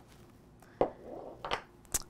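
Light handling sounds at a craft desk: three soft taps and a brief faint rustle as the clear stamp and the cardstock are moved on the work mat.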